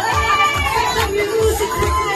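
Upbeat karaoke backing track with a steady bass beat, with several voices shouting and singing along over it through the room's speakers.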